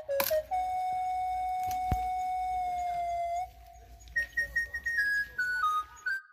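Background music: a flute-like melody plays one long held note that sags slightly in pitch, then a run of short, quick notes higher up. A single sharp thump sounds about two seconds in.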